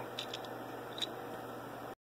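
Faint steady room hiss with a few light clicks as the 3D-printed plastic push button is handled, the sharpest click about a second in.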